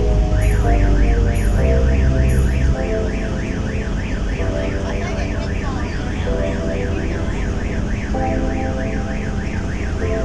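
A warbling electronic alarm, rising and falling in pitch about three times a second, starting about half a second in and running steadily, over a deep rumble that drops away about three seconds in. Background music plays underneath.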